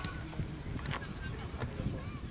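Wind rumbling on the microphone, with faint distant shouts of players and two faint knocks, about a second in and near the end.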